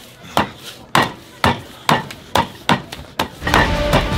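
About eight sharp slaps of hands on a tabletop, roughly two a second and quickening toward the end, as a restaurant bill is pushed back and forth across the table.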